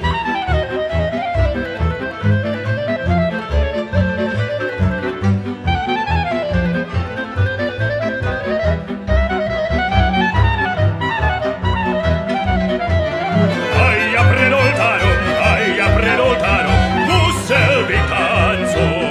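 Instrumental passage of a traditional Slovak folk song played by a string band: a violin carries an ornamented melody over a steady pulsing bass. About fourteen seconds in the music grows fuller and brighter.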